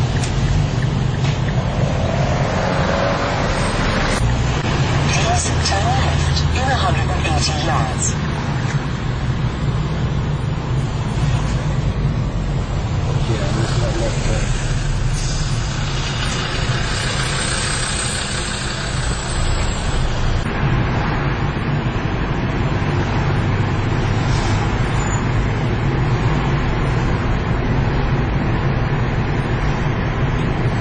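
Car road noise heard from inside the cabin while driving through town traffic: a steady low engine and tyre rumble, with a louder rushing hiss for several seconds around the middle.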